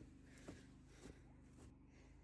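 Near silence: faint footsteps on grass, about one step every half second, over a low steady hum.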